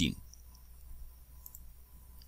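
A few faint computer mouse clicks over quiet room tone, just after a spoken word ends.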